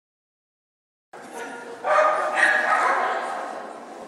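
Silence for about a second, then a dog barking mixed with people talking.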